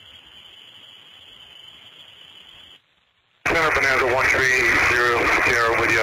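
Air traffic control radio channel: faint hiss of an open channel for a bit under three seconds, a moment of silence, then a loud, narrow-band radio voice transmission for the last few seconds.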